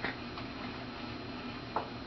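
Steady background hiss with a sharp click at the start and a fainter tick about half a second later, then a brief short sound near the end.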